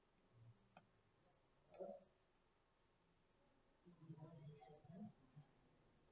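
Near silence: a few faint computer mouse clicks in the first two seconds, then a faint low mumbling voice from about four seconds in.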